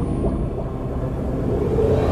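Cinematic intro soundtrack: a deep, low rumble that slowly swells in loudness.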